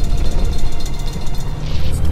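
Background music with steady held tones and sharp percussive hits, over the low rumble of a vehicle driving on a rough dirt road.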